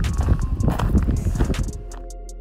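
Footsteps of running shoes crunching on a loose white gravel path, a quick string of steps. The sound cuts off shortly before the end.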